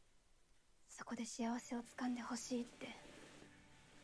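A short spoken phrase, about two seconds long, starting about a second in.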